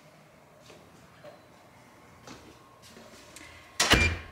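A few faint clicks and knocks, then a front door fitted with a digital fingerprint lock shutting with one loud thud near the end.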